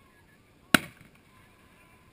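A single sharp firework bang about three quarters of a second in, dying away quickly.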